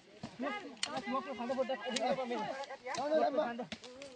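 People's voices talking and calling out, with a few sharp clicks.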